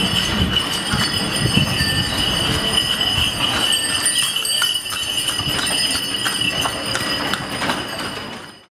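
Loud street ambience: a steady high ringing tone over many irregular clicks, clatters and knocks, with a low rumble underneath.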